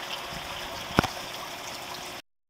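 Steady trickle of running water, with one sharp click about halfway through.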